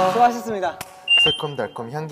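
A voice repeatedly asking "Can I talk?", with a thin high-pitched beep about a second in that lasts under a second.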